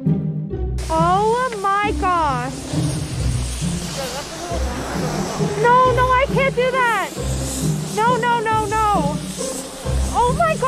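A girl wailing and whimpering in high, sliding cries, in several short bouts, over background music.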